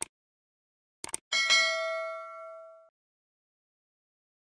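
Subscribe-button animation sound effect: a quick double mouse click, then about a second in another double click followed by a notification-bell ding. The ding rings and fades out over about a second and a half.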